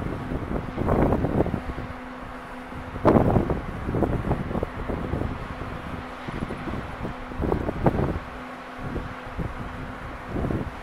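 Gusty wind buffeting the camera microphone in irregular surges, the strongest about three seconds in and more around one and eight seconds, with a faint steady hum underneath.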